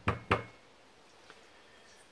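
Two sharp knocks about a quarter of a second apart, followed by quiet with one faint tick a little over a second in.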